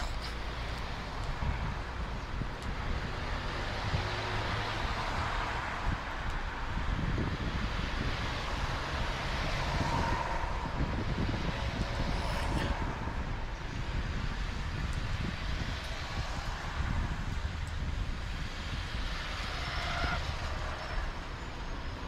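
Steady background noise, a low rumble with a hiss above it, running evenly throughout.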